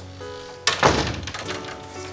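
A wooden front door is pushed shut with a single thunk about two-thirds of a second in, over soft background music with sustained notes.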